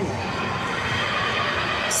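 Laughing kookaburra calling over the steady murmur of a stadium crowd.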